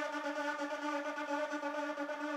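Music played through a coaxial speaker and picked up by a camcorder's built-in microphone: one steady held note with a light pulse and no bass.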